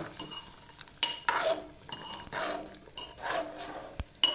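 Metal spoon stirring thick mango chutney in a metal pot: several scraping strokes, some starting with a clink against the pot's side.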